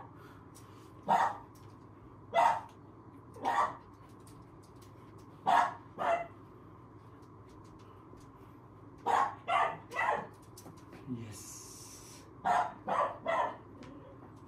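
A small puppy barking in short, sharp yaps: single barks at first, then a pair, then two quick runs of three.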